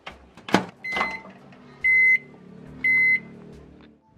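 Microwave oven: a couple of sharp clicks, a short keypad beep, then two long high beeps about a second apart, with the oven's low running hum underneath.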